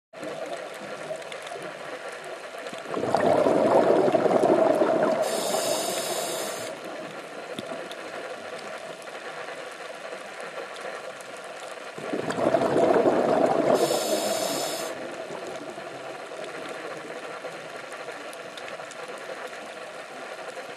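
Scuba diver's breathing heard underwater through the regulator. A loud rush of exhaled bubbles comes about three seconds in and again about twelve seconds in, each lasting a few seconds and ending with a brief higher hiss. A steady underwater hiss fills the time between.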